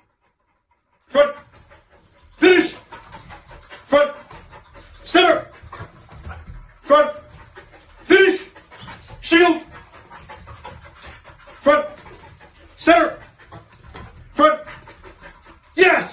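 A dog barking repeatedly, about eleven single short barks spaced a second or so apart.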